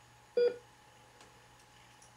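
One short electronic beep from a heart monitor about half a second in, the patient's heartbeat signal, heard over a faint low hum.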